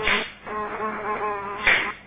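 A housefly buzzing steadily, broken by two loud hand claps about a second and a half apart as hands snap shut on it.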